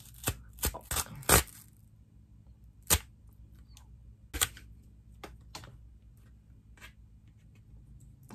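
Tear strip of a cardboard mailer envelope being pulled open: the cardboard tears in a series of separate sharp snaps and crackles, several quick ones in the first second and a half, then sparser ones with pauses between.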